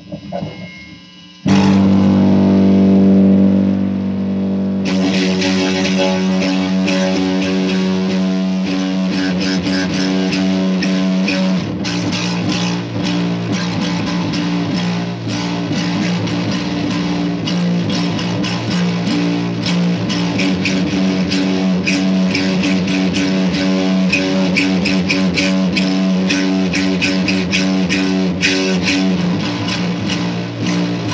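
Electric bass guitar played loud: a sustained note rings out suddenly about a second and a half in, then from about five seconds a busy, rapidly picked riff runs on steadily.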